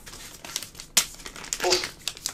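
Dry leaf litter crunching and crinkling underfoot, with a sharp click about a second in.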